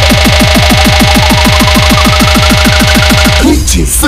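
Holi DJ competition remix with a hard "toing" bass: rapid falling bass drops repeating faster and faster, under a synth tone gliding steadily upward. This build-up breaks off about three and a half seconds in with a short crash.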